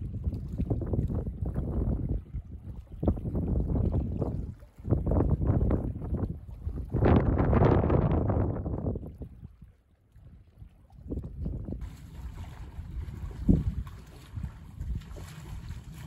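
Wind buffeting the microphone in gusts: a deep, uneven rumble that surges and drops, strongest about seven to nine seconds in, then easing to a quieter hiss after about twelve seconds.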